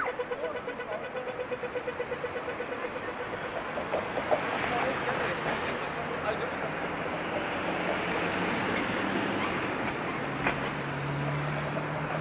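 Pedestrian crossing audio signal: a quick descending zap, then rapid steady ticking for about three and a half seconds, the signal to walk. City street noise follows, with a vehicle's low engine hum from about ten seconds in.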